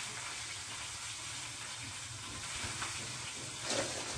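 Steady hiss of background noise with a faint low hum underneath and no distinct events.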